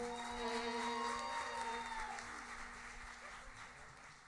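Audience applauding at the end of a song, with a held low note from the ensemble ringing out beneath it for the first two seconds; the clapping thins out and fades away by the end.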